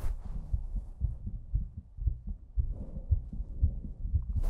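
Muffled, irregular low thumps and rubbing as clothing presses against a body-worn microphone during a hug.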